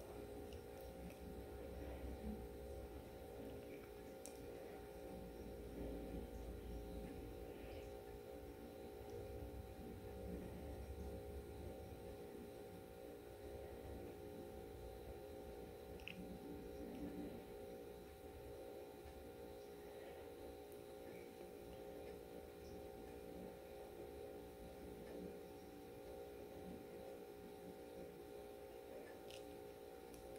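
Very faint room tone: a steady low hum made of several held tones, with a little low rumble and a few faint ticks.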